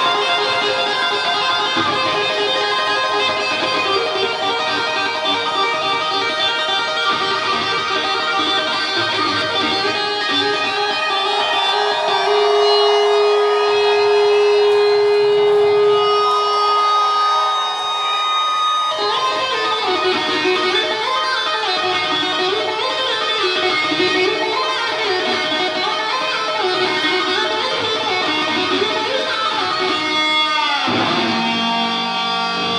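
Glam metal band playing live, with an electric guitar lead over bass and drums. About halfway through one long note is held, and from about 19 s the lead turns to quick wavering, bending notes.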